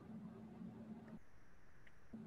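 Near silence: faint room tone over a video call, with a low hum that drops out a little over a second in.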